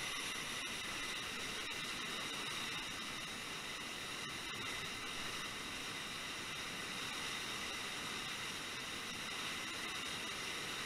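Steady rushing of a waterfall and the whitewater churning below it.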